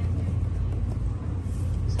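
Steady low hum of air conditioning running.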